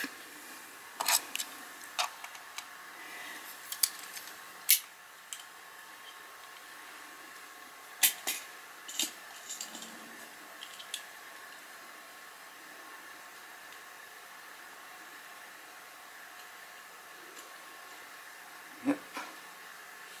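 Faint steady hum of a small motorised display turntable turning, with a few scattered small clicks and ticks, mostly in the first half.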